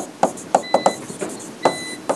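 Stylus tapping and scraping on an interactive touchscreen display as words are handwritten on it: several sharp taps and clicks. A faint high steady tone comes and goes in short spells of about a third of a second.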